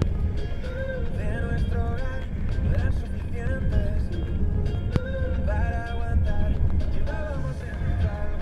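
Music from a radio broadcast: a song with a melody that steps up and down over a steady low hum.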